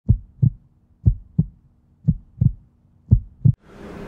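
Heartbeat-like sound effect: four double low thumps, one pair about every second, over a faint steady hum.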